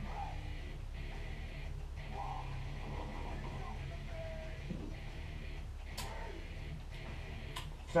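Steady low hum of the room while a man drinks beer from a glass mug, with two small clicks near the end.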